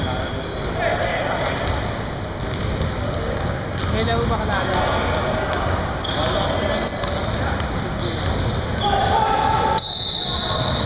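Basketball being dribbled on a hardwood gym floor in a large hall, with players' voices in the background.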